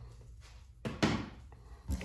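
Hand tools being handled on a wooden workbench: a short knock about a second in and another just before the end.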